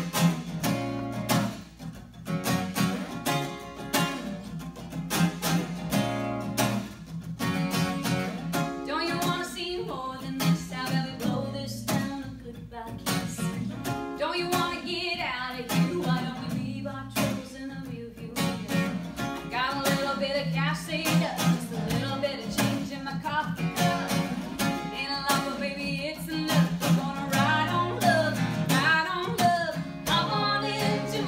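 Acoustic guitar strummed in a steady rhythm, with a woman singing a country song over it from about eight seconds in.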